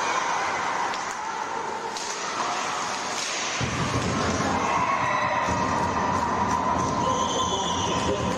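Live ice hockey rink sound: a steady hiss of play and a small crowd. About three and a half seconds in, a deep rumble sets in and a steady high tone joins it, around a goal being scored.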